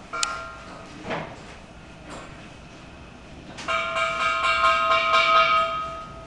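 A piece of metal being struck and ringing at a few fixed pitches. It is hit once just after the start with a short ring, then hit rapidly, about five times a second, for a little over two seconds near the end, ringing louder throughout.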